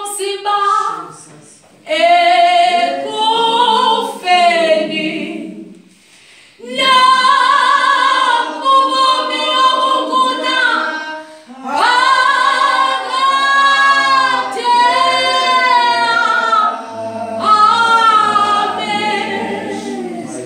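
Unaccompanied singing led by a woman's voice, in long held phrases with short breaks about two and six seconds in.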